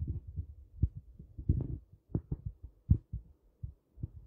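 Irregular soft low thumps with a few sharper knocks, unevenly spaced and growing sparser near the end.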